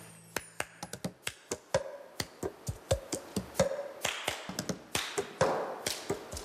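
Cups knocked and slapped on a floor together with hand claps, in the cup-game rhythm: a quick string of sharp knocks, about three to four a second, growing louder.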